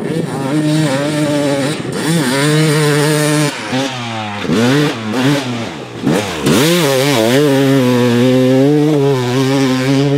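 2007 Yamaha YZ250 two-stroke single-cylinder engine revving as the dirt bike is ridden. The pitch climbs and falls with the throttle, chops off and picks up several times in the middle, then holds high and steady near the end.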